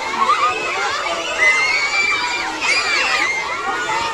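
A crowd of children shouting and cheering at once, many high voices overlapping, with one long high shout held for about a second starting about a second and a half in.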